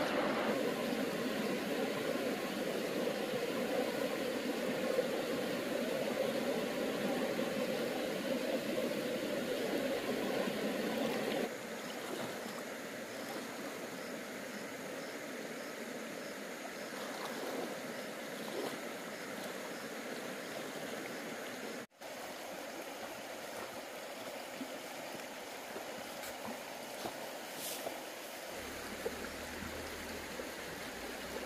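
Shallow river flowing over rocks: a steady rush of running water. It drops to a quieter, softer rush about eleven seconds in.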